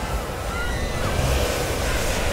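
A steady rushing noise like wind or surf, deep and full, with a few faint short gliding whistles in it.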